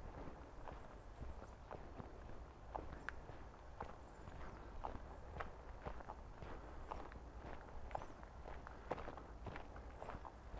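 Footsteps of a person walking on a dirt woodland path, about two steps a second.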